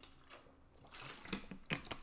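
A few faint, short clicks, most of them bunched in the second half.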